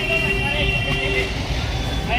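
A vehicle horn held on one steady note that stops a little over a second in, over a low traffic rumble.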